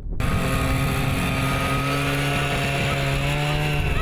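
Small engine of a tracked tundra vehicle running at a steady speed with an even note.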